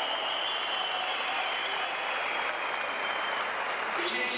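Crowd applauding at a steady level.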